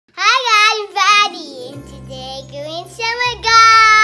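A young child's high voice singing out loudly in a sing-song way: two short calls at the start and a long held note near the end. Background music with a steady low bass comes in under the voice about two seconds in.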